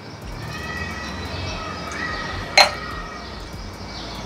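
A stemmed glass tasting glass set down on a wooden board, giving a single sharp clink about two and a half seconds in. Under it is a low steady background hum with faint thin tones.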